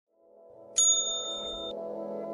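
A bright bell-like ding about three-quarters of a second in, ringing for about a second before cutting off, over soft background music fading in.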